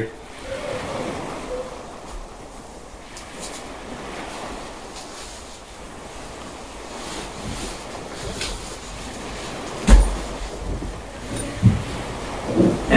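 Fabric and strap rustling from a heavily loaded Freein paddle-board backpack bag as it is worn and shifted on the shoulders, then swung off. A heavy thump about ten seconds in is the packed bag coming down toward the floor.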